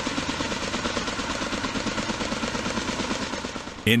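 Kaman K-MAX intermeshing-rotor helicopter in flight, powered by a Honeywell T53-17 turboshaft: the rotors beat fast and steadily over the engine's running noise, easing off slightly near the end.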